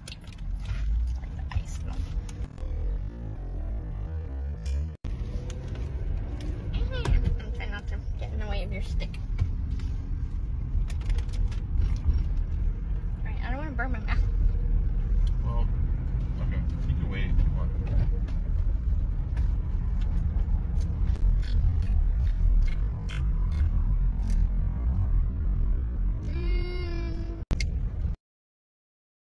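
Low, steady rumble of a car heard from inside the cabin, with faint voices and snatches of music over it. The sound drops out briefly about five seconds in and again just before the end.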